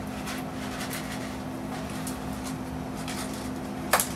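A steady low hum with a few faint clicks and rustles of laundry being loaded and detergent handled at an open top-loading washing machine.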